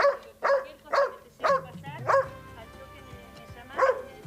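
A young dog barking from behind a wooden gate: five sharp barks in quick succession about half a second apart, then one more near the end.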